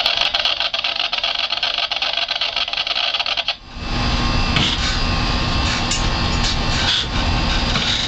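Running engine of a large harbour boat under way, a steady low rumble with a constant hum, mixed with wind and water noise. For the first three and a half seconds a fast, fine crackling rattle covers the low end, then breaks off and the engine rumble comes through.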